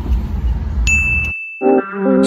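A single bright bell 'ding' sound effect about a second in, ringing out and fading over about a second, over a low car-cabin rumble that cuts off. Music starts near the end.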